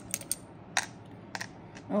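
Small letter tiles clicking as a hand picks them up and sets them down on tarot cards: about five separate sharp clicks, the strongest about a second in.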